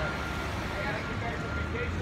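City street ambience: a low traffic rumble that swells near the end, with faint voices of people in the distance and a thin steady high tone that comes and goes.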